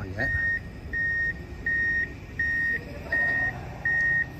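Electronic warning beeps: one high tone repeating evenly, about six beeps at a little under one and a half a second, over low construction-site rumble.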